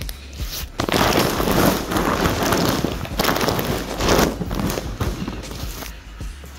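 Large plastic dog food bag crinkling and rustling loudly as it is handled and flipped over, a dense crackle that starts about a second in and lasts about four seconds.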